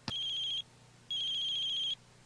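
Electronic telephone ring: two beeps of a steady high tone, a short one and then a longer one after a half-second pause, starting with a click.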